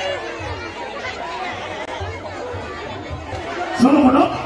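Crowd chatter, many voices talking at once over faint music with a low, repeating beat. A louder voice breaks in near the end.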